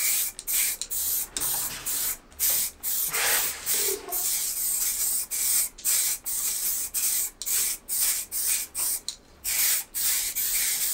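Two aerosol spray-paint cans hissing in short bursts, roughly two a second, as matte camouflage paint is sprayed onto rifles in stripes.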